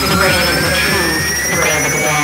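Hardcore electronic track in a build-up: a rising synth sweep over a dense, noisy wash, with the kick drum dropped out.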